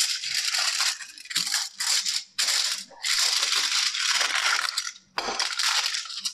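Aluminium foil crinkling as it is folded and pressed around the outside of a round metal cake pan. It comes in irregular bursts with short pauses.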